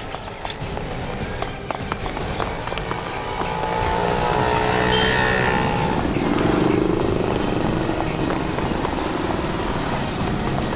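Dramatic background music with a driving beat, swelling louder a few seconds in, over the noise of street traffic.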